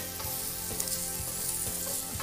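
Diced turkey frying in a stainless steel pan, a steady sizzle as it is stirred with a wooden spatula.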